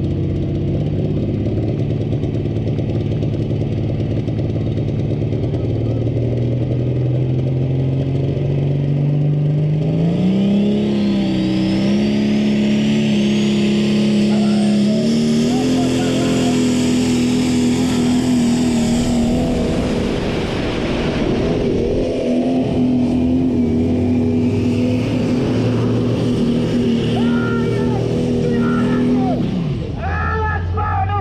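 Prostock pulling tractor's diesel engine revving up under full load on a pull. Its pitch climbs in steps from about ten seconds in, then holds at high revs with a brief sag in the middle. A high whistle rises over it as the revs build.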